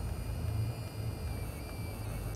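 Contax 645 medium-format camera's built-in film-advance motor running steadily with a whir as it winds freshly loaded 120 film forward to frame one.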